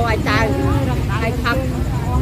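People talking, with no clear words, over a steady low rumble of motorbike traffic.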